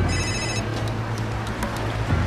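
Mobile phone ringtone: one short burst of electronic tones lasting about half a second at the start, over a steady low drone.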